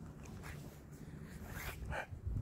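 A short, faint animal call near the end, over a low steady background hum.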